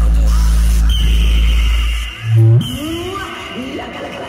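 A DJ sound system with 16 bass bins plays a very loud, deep, steady bass tone that cuts off about two seconds in. A short heavy bass hit follows, then wavering tones that glide up and down in pitch.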